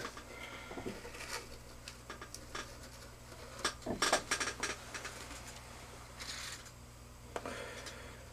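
A sheet-aluminum tray is handled with small aluminum gas checks loose in it, giving scattered light clicks, taps and scrapes. The sounds are busiest about four seconds in.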